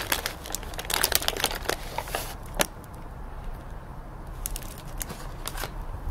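Crinkling of a plastic bag of gummy candy being handled: a quick run of crackles in the first two and a half seconds, then only a few scattered ones.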